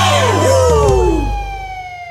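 A siren sound effect, one long wail whose pitch slowly falls. The song's backing music ends under it about a second and a half in. The whole sound fades away toward the end.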